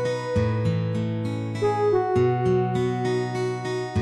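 Background music of a strummed acoustic guitar playing gentle chords, with a held melody line over it.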